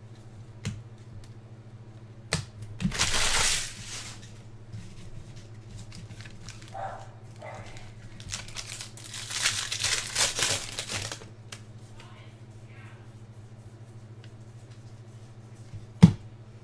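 Foil wrapper of a baseball card pack crinkling and tearing as it is opened by hand, in two bursts: a short one about three seconds in and a longer one from about eight and a half to eleven seconds. A steady low electrical hum runs underneath.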